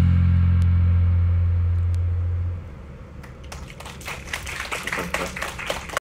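A band's final low, bass-heavy chord ringing on and then cut off about two and a half seconds in. An audience starts clapping about three seconds in, the applause thickening toward the end.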